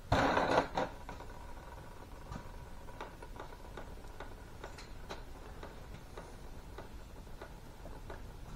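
Metal on metal: a brief clatter at the start, a second smaller knock, and a ring that fades over a couple of seconds. After that, scattered light clicks and taps as small metal hydraulic valve parts and a hand tool are handled.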